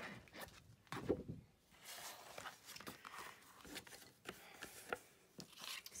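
Cardstock and tape being peeled and handled: faint, irregular rustling and crinkling of paper with a few light clicks.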